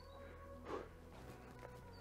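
Quiet outdoor background with a faint low hum, and a single soft footstep on wet, snowy grass a little under a second in.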